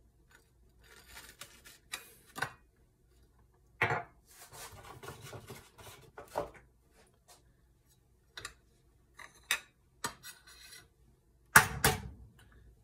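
A ceramic cup pressed and twisted into a slice of bread on a ceramic plate to cut out a round hole: soft rubbing and scraping, with scattered sharp knocks of cup and plate and a loud pair of knocks near the end.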